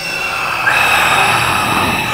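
Eerie sustained screeching drone from a horror film soundtrack: several steady high metallic tones over a hiss, swelling up in the first half second and then holding.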